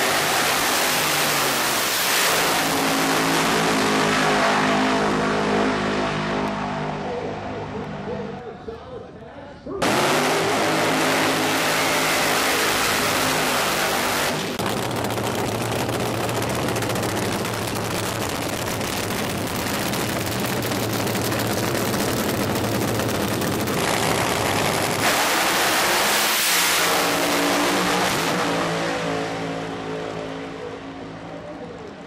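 Supercharged nitro-burning AA/FC funny car engines running at high revs on the drag strip. The engine note fades over the first several seconds and cuts back in abruptly about ten seconds in as a dense, loud roar. A strong pitched engine note returns near the end.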